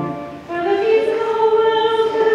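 A held chord from the accompaniment stops at the start. About half a second later, unaccompanied chanting of the liturgy begins: a single sung line that steps up once and then holds a steady reciting note.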